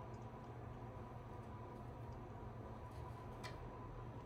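Quiet room tone with a steady low hum and a few faint ticks, one sharper click about three and a half seconds in.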